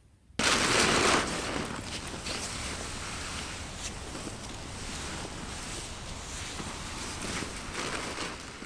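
Rustling of a Katabatic Alsek 22 down quilt's nylon shell as it is gathered up and handled. It starts suddenly about half a second in and is loudest in the first second, then runs on as steady rustling with scattered crinkles.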